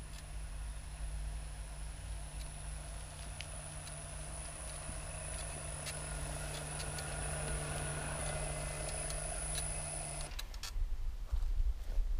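Electric Krot cultivator running on a frequency converter while it pulls a plough through the soil: a steady high whine over a low hum, with scattered clicks. The motor stops sharply about ten seconds in.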